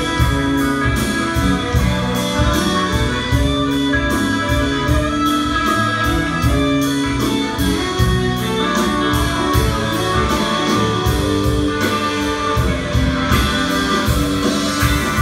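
Live blues band playing an instrumental passage: amplified blues harmonica over electric guitars, bass guitar and drums, with a regular cymbal beat.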